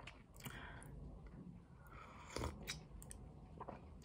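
Faint mouth sounds of someone sipping warm chicken broth from a bowl: a short slurp about half a second in, then a few soft lip and tongue clicks.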